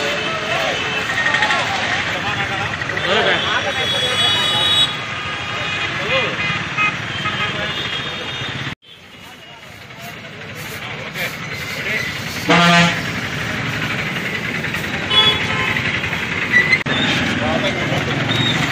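Background chatter of a crowd of voices, with a single short vehicle horn toot a little past the middle. The sound cuts out sharply for a moment shortly before the toot.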